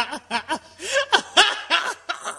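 A person laughing in a rapid run of short voiced bursts.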